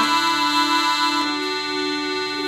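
Accordion playing held chords that change about a second in and again near the end, an instrumental passage between sung lines.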